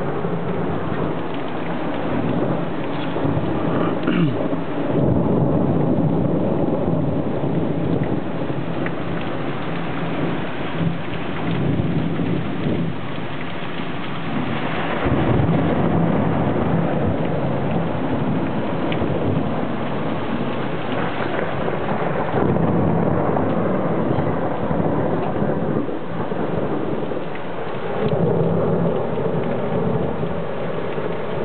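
Heavy rain pouring steadily in a thunderstorm, with thunder rumbling and swelling louder several times.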